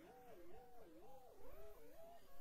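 A faint pitched tone whose pitch wobbles up and down about twice a second, like a sound put through an electronic warble effect.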